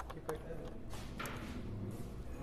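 Indistinct voice over a low steady hum, with a few light clicks and taps as a screwdriver and plastic laptop parts are handled; the sharpest click comes about a quarter second in.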